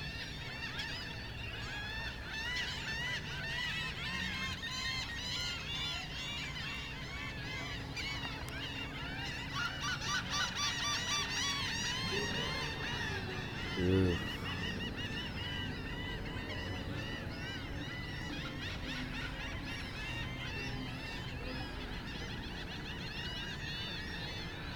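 A large flock of birds calling continuously, many short overlapping calls at once, busiest a little before the middle. One louder, lower sound stands out about fourteen seconds in.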